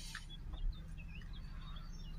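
Small bird chirps, short rising and falling notes, over the steady low running of an idling Audi 3.0 TDI V6 diesel engine, with one soft low bump about two-thirds of a second in.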